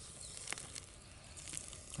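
Faint handling sounds of a tube being pushed into a trench of dry soil: a few light clicks and rustles.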